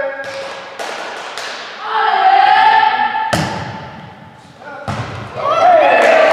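Volleyball rally: a volleyball is struck by hands four times in about six seconds, each a sharp slap with a short echo, and players shout between the hits.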